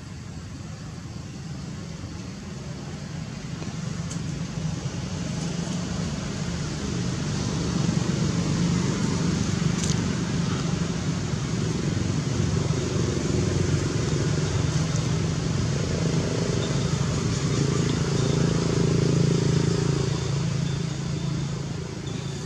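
A motor vehicle's engine running steadily, growing louder over the first several seconds and then holding at a steady level.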